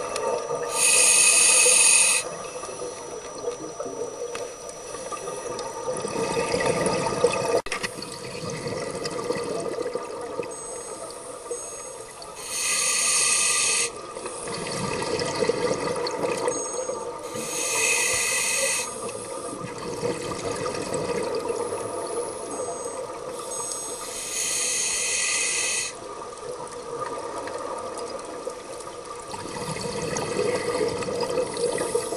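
Scuba diver breathing underwater through a regulator: a sharp hiss on each inhalation, four times several seconds apart, with bubbling exhalations between them.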